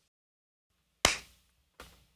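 Dead silence at first, then a faint low hum and a single sharp tap about a second in that dies away quickly, with a fainter short sound near the end.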